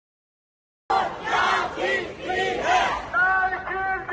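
Silence for about the first second, then a crowd of protesters starts chanting in unison, loud and rhythmic; from about three seconds in the voices hold longer, steadier notes with regular breaks.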